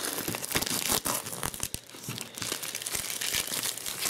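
Clear plastic wrapping crinkling and tearing as it is pulled off a stretched art canvas, in a dense run of irregular crackles.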